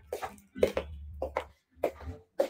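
Handling noise close to the microphone: about five short, sharp knocks and rustles as hands move the phone and a cloth held near it.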